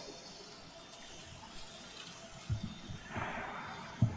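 Faint room tone in a pause between spoken parts, a low steady hiss with a few soft low thuds about two and a half seconds in and a faint rustle near the end.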